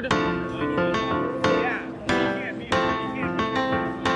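Artiphon Orba handheld synth and MIDI controller in its chord part, its pads tapped to play a series of chords: several sharp-struck chords, each ringing and fading before the next.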